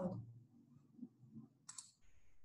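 Faint room tone with a brief, sharp double click near the end.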